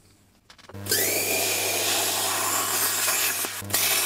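Air plasma cutter (40 A torch) cutting through a thin aluminium drink can: a steady hiss of air and arc with a low electrical hum, starting about a second in and briefly dipping past three seconds.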